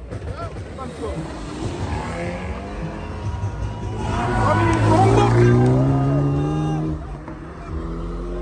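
A car engine revving hard as the car accelerates close past, its pitch climbing steadily for several seconds, loudest about five seconds in, and falling away near the end. Crowd voices are heard around it.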